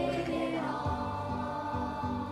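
Children's choir singing a sustained, steady song over instrumental accompaniment with a regular bass line.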